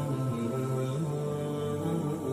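Background vocal music, chant-like, sung in long held notes that step slowly from one pitch to the next.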